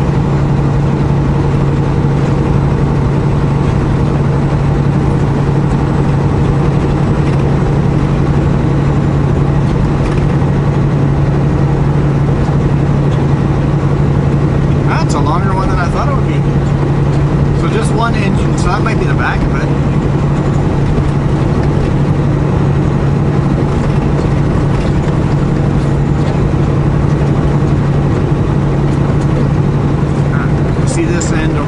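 Semi truck's diesel engine droning steadily at highway cruising speed, heard from inside the cab with road noise.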